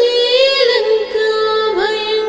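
Devotional song: a female voice sings a sliding, ornamented melodic phrase over a steady drone.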